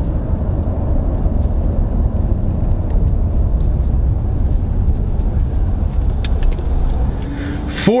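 Steady low rumble inside the cabin of a 2017 Ford F-150 Raptor under way: its 3.5-litre twin-turbo V6 and road noise, with no sharp events.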